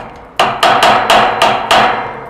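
A rod being jabbed repeatedly into the keyhole of a brass magnetic lock defender in an attempted break-in, knocking hard against the metal: about seven sharp, ringing strikes in quick succession, starting about half a second in.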